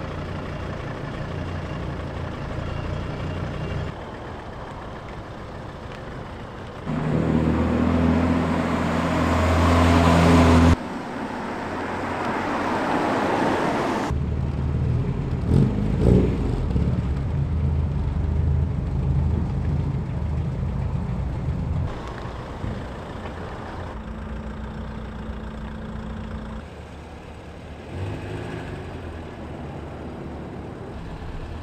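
Volvo cars driving slowly into a car park one after another, engines running at low speed. The sound changes abruptly several times as one car gives way to the next, with the loudest stretch in the first third.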